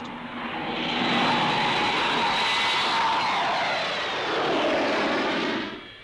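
Fairey Gannet's Armstrong Siddeley Double Mamba turboprop flying low past. The engine sound swells over about the first second, holds, then fades out shortly before the end. Its whine slides down in pitch as the aircraft goes by.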